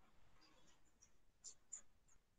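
Near silence: quiet room tone with a few faint, light clicks, two of them close together about a second and a half in.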